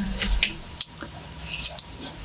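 Close-miked chopsticks working through creamy alfredo-coated fettuccine: sticky, wet clicks and squelches, with one sharp click about a second in. A burst of crisp wet clicks near the end as the forkful reaches the mouth.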